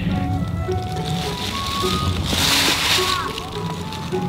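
Background music: a slow melody of held notes moving step by step, with a brief burst of hiss about two and a half seconds in.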